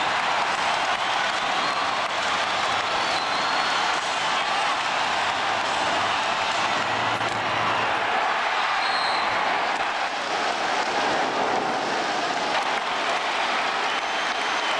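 Basketball arena crowd cheering and applauding in a steady, loud roar for a home-team three-pointer.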